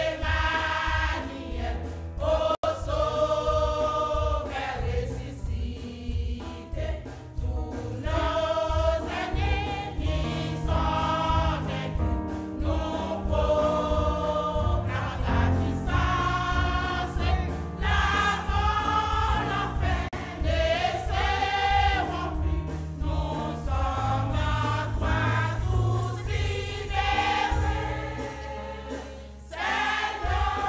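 A church choir singing in parts, the voices rising and falling phrase by phrase over a low, even beat.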